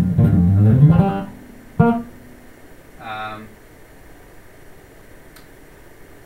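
Made-in-Japan Ken Smith Burner five-string electric bass played in a quick run of notes, stopping about a second in; a single plucked note follows near two seconds and dies away, then a brief held tone about three seconds in. The playing shows off what is called the bass's creamy, boutique tone.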